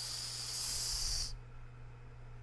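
A man's drawn-out 'sss' hiss, the held 's' at the end of the spoken word 'house'. It is steady and high-pitched, cuts off about a second and a half in, and has a low steady electrical hum underneath.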